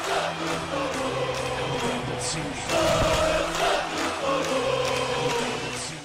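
Intro jingle music with a steady beat and held tones, cutting off abruptly at the end.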